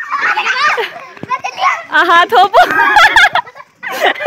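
Young girls' excited high-pitched shouts and calls as they play a chasing game, in several bursts with a short lull about a second in.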